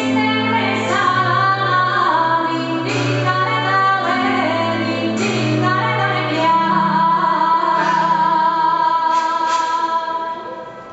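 A woman singing a folk-style melody into a microphone over low, sustained accompanying notes. She holds one long note through the last few seconds.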